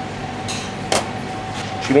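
A single sharp metallic click about halfway through, as a stainless-steel ring mould is lifted off a plate, over a steady faint tone.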